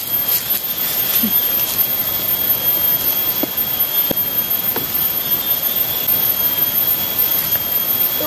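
A steady, even hiss with a constant high whine running through it, and a few faint soft ticks around the middle.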